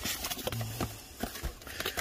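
Cardboard box being cut and pulled open with a pair of shears: a run of irregular sharp clicks and snips with cardboard flaps rustling.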